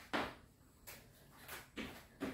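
Sneakered feet landing on an exercise mat during skater hops and jumping jacks: four short thuds, the first the loudest.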